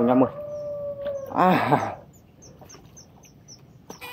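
A woman's long drawn-out excited cry, held on one pitch for about a second and sagging slightly at the end, then a second short cry. After it, a faint even series of high ticks, about four a second.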